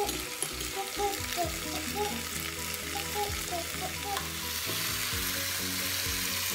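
Chicken pieces sizzling as they fry in the oiled pot of a Philips All-in-One electric pressure cooker on its high sauté setting, with a wooden spatula stirring them. The sizzle grows louder about four seconds in.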